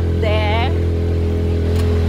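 A motor vehicle's engine running with a steady, unchanging low drone, its pitch holding level throughout. A short burst of voice comes in just after the start.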